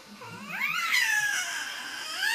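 Baby girl giving one long high-pitched squeal that rises and then slowly falls.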